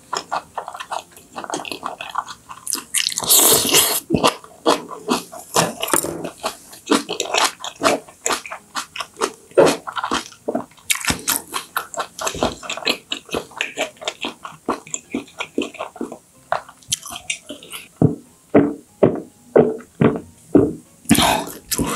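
Close-miked chewing: a person chews food with many small wet clicks and smacks of the mouth, the steady eating sound of a mukbang.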